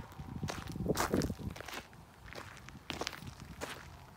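Footsteps crunching on dry dirt and gravel as someone walks with a handheld camera, loudest about a second in and fainter after.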